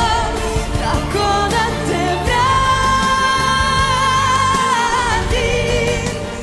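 A woman singing a Bosnian-language ballad live with full band backing, holding one long note through the middle.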